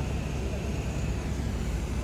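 Steady low rumble of a sleeper bus's engine and road noise, heard from inside the passenger cabin.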